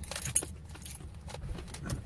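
Small clicks, clinks and rustling of hands rummaging through a handbag, with one sharp click about a third of a second in, over a steady low hum.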